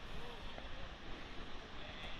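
Steady wind noise on the microphone over the wash of surf from the beach.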